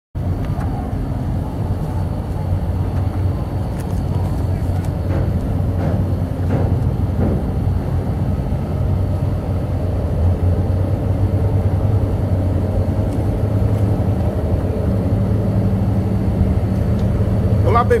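Steady low engine rumble with a constant hum, and a few faint knocks partway through.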